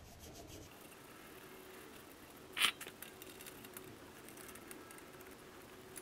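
Toothbrush scrubbing a brake caliper: faint, quick scratchy brushing strokes on metal, with one short sharper click or scrape about two and a half seconds in.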